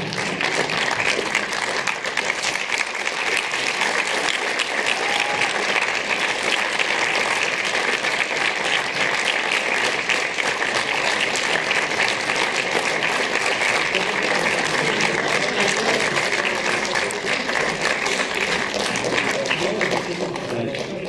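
Audience applauding steadily, many hands clapping at once without a break.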